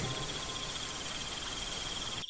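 Crickets chirping in a steady, fast trill over a soft hiss: a night-time ambience bed.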